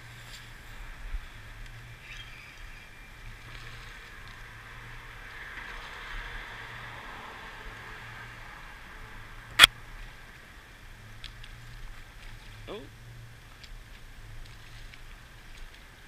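Steady distant city and harbour background hum over open water, with one sharp click a little past halfway and a brief short pitched sound about three seconds later.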